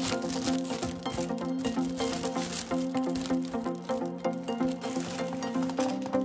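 Foil snack bag crinkling as it is handled and opened, with small hard pieces clicking as they drop onto a table, over light background music.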